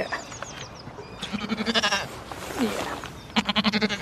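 Pygmy goats bleating: two quavering bleats of about a second each, one starting just over a second in and one near the end, with shorter falling calls between them.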